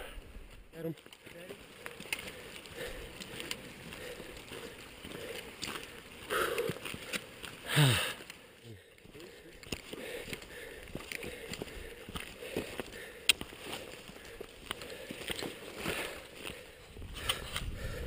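A hiker walking a dirt-and-rock trail: uneven footsteps and rustling of a backpack and gear close to the camera, with small scattered clicks. A brief louder sound with a falling pitch comes about eight seconds in.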